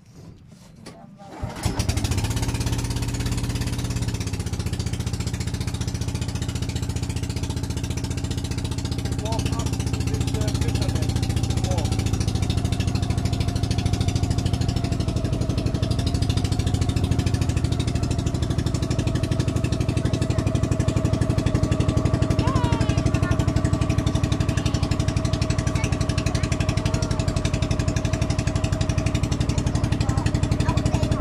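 An outrigger boat's engine starts about a second and a half in, then runs steadily with a fast, even firing beat.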